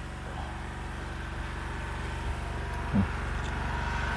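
A small engine running steadily at an even idle, growing slightly louder, with a brief voice sound about three seconds in.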